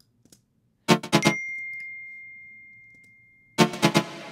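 Synth chord stabs from a techno track: a quick cluster of three or four hits about a second in, leaving a single tone that rings and fades over about two seconds, then another cluster near the end. The stab runs through reverb in a parallel rack, the reverb compressed so it sits behind the dry hit.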